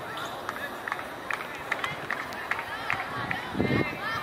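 Open-air sound of a soccer match in play: scattered shouts and calls from players and onlookers, with short sharp knocks and a louder low thump about three and a half seconds in.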